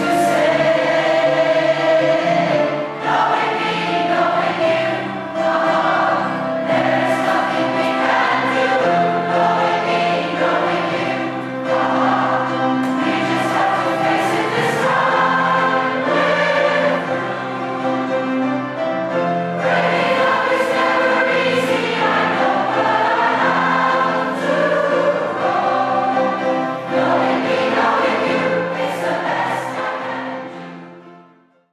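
Large community choir, mostly women's voices, singing together.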